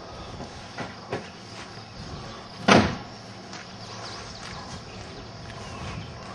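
A 1991 Chevrolet Corsica's engine idling with a steady low hum. A brief loud burst of noise comes nearly three seconds in.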